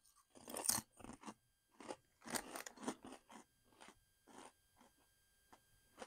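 Small, thin potato chips being crunched and chewed by mouth, a quick irregular run of faint crisp crunches that thins out after about four seconds.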